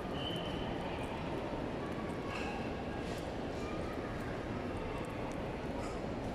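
Indoor shopping-mall ambience: a steady hubbub of indistinct distant voices, with occasional footsteps on the hard tiled floor.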